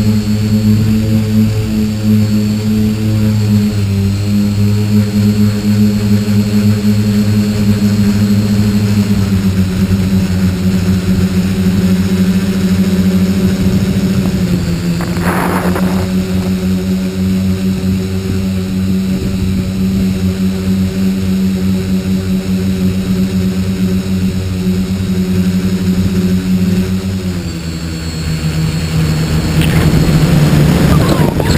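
Tricopter's electric motors and propellers droning steadily as heard from its onboard camera. The pitch steps down slightly a few times as the throttle eases, most noticeably near the end, and a brief rush of noise cuts through about halfway.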